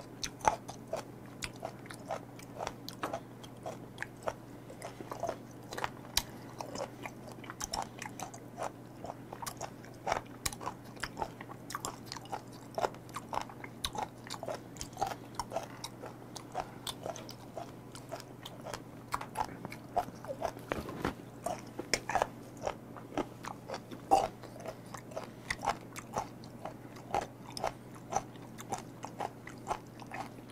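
Close-miked chewing of unfermented skate nose (hongeo-ko), a crunchy cartilage: repeated crisp crunches and wet bites a few times a second, over a steady low hum.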